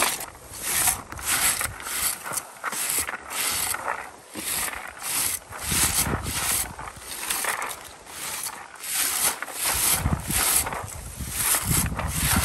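Plastic berry-picking rake combing through lingonberry shrubs, pulling off the berries in quick rustling strokes, about two a second.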